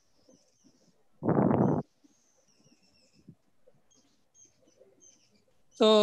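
Faint, high, short bird chirps in the background, with one brief, louder rough burst about a second in.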